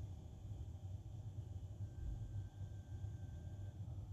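A faint low hum with a thin steady whine in the middle that lasts about two seconds. This is typical of a Volkswagen Climatronic's flap servo motors driving the air flaps to their end stops during a flap adaptation.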